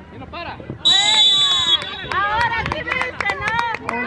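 A referee's whistle blows one steady, high blast of almost a second, about a second in; it is the loudest sound. Voices of players and spectators call out around and after it.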